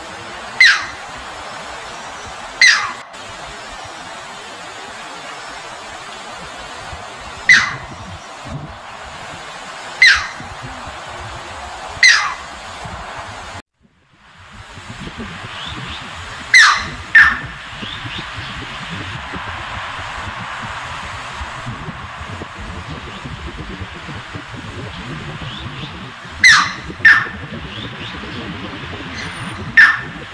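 Stream water running over rocks as a steady background, with a bird's loud, sharp, downward-sliding call about ten times, sometimes in quick pairs. The sound cuts out briefly about halfway through.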